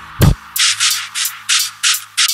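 Electronic beat in a stripped-down break: the bass drops out, leaving one kick drum hit about a quarter second in under a fast run of hissy, hi-hat-like noise hits.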